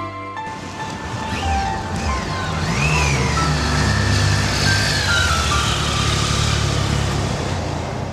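Two motorcycles riding past at speed, starting about half a second in: the engine note climbs and drops several times over a steady rush of engine, wind and road noise.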